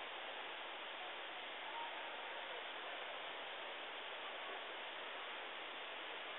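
Steady low hiss of recording background noise, with no distinct event.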